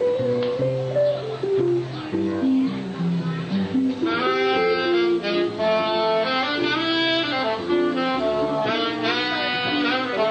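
Small live jazz combo of saxophone, archtop guitar and upright bass playing a New Orleans-style tune. About four seconds in, a bright saxophone melody comes to the front over the guitar and bass.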